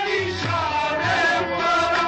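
Qawwali music: a gliding, ornamented melody line over a steady drum beat.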